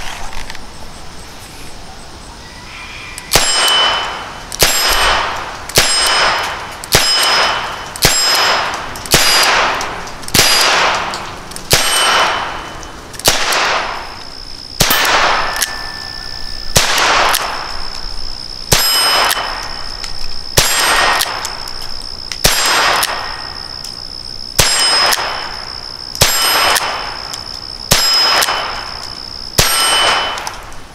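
A .22 Long Rifle revolver firing a long string of about twenty shots, starting a few seconds in, roughly one a second with a few longer pauses. Each shot is followed by a ringing metallic clang.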